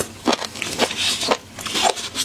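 Close-miked chewing of seafood, with a crunch about twice a second and a brief crackle about a second in.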